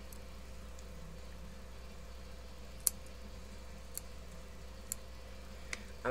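Quiet steady electrical hum with a few scattered light clicks, the sharpest about three seconds in.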